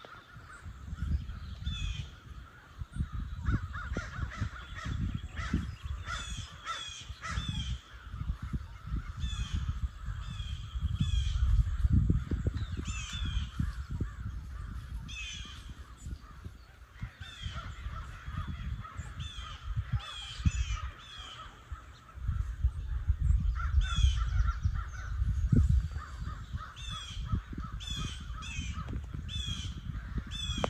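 Many birds calling over and over, several calls every couple of seconds throughout. Gusts of wind rumble on the microphone, swelling in the middle and again later.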